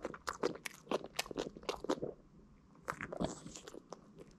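Boston terrier chewing a hard little duck-bone treat: a quick run of crisp crunches for about two seconds, then a pause and a few more crunches near the end.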